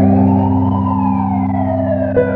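A siren wailing, its pitch rising and then slowly falling, over sustained low chords of ambient music.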